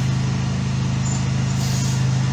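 Steady low machine hum, made of several pitched tones, with no change in level.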